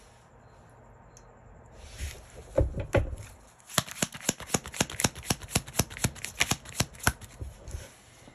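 Tarot deck being shuffled by hand: a couple of soft thumps, then, from about halfway in, a quick run of card clicks, about seven a second, lasting some three and a half seconds.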